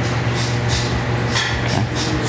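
A steady low machine hum with a rushing noise over it, like a running motor or fan.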